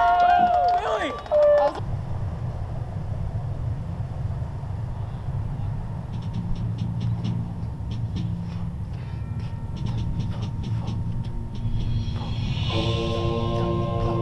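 Voices for the first couple of seconds, then a steady low rumble with scattered light ticks. Near the end a drum corps brass line comes in on a held chord.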